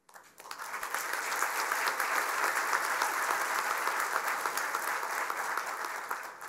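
An audience applauding: many hands clapping together, starting a moment in, holding steady, and dying away near the end.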